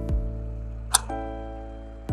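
Upbeat corporate-style background music with held chords; its beat drops out just after the start and returns right at the end. A single sharp click sounds about halfway through.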